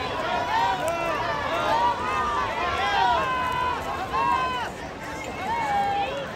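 Spectators shouting and cheering on swimmers, many high voices overlapping and calling out at once.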